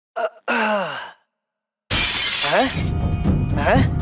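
A man's voice gives a short sound and then a longer falling cry. After a brief silence, loud film music with a dense beat starts about two seconds in.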